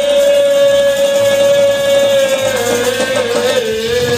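A man singing gospel into a microphone, holding one long high note that dips and wavers near the end, with music behind him.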